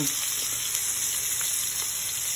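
Chicken wings sizzling steadily as they pan-fry in hot oil, with a few faint clicks.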